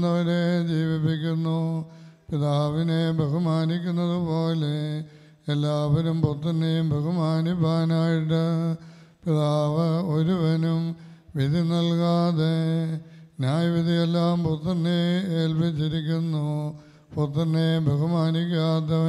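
Clergy chanting funeral prayers into a microphone, in sung phrases of two to four seconds with short breaks between them.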